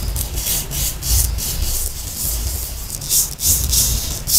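Coloured sand shaken from a small cup onto an adhesive sand-art sheet: a dry, gritty hiss in quick repeated spurts, a few a second.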